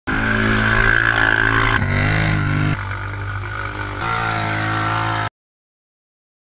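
ATV engine revving hard under load as its tyres spin through mud, in a few short clips cut together, with the pitch changing abruptly at each cut. The sound stops dead about five seconds in.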